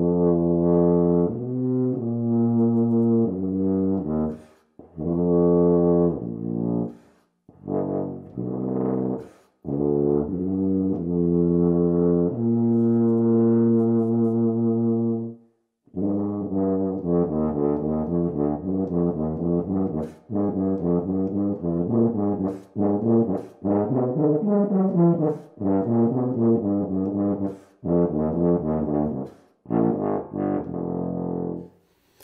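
Solo tuba playing: phrases of slower, held notes with short breaks for breath, then, about halfway through, a faster, more technical passage of quick notes.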